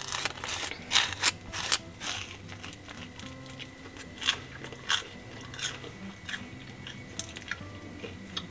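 Wooden knife scraping butter across a slice of toast, then crisp crunching bites and chewing of the buttered toast. The crackles come thick in the first two seconds, then as scattered single crunches.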